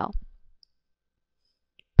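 Near silence after a narrating voice trails off, with a faint computer mouse click near the end.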